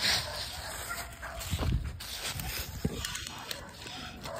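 A dog's vocal sounds close to the microphone, with scuffling and a few thumps in dry leaves on the ground.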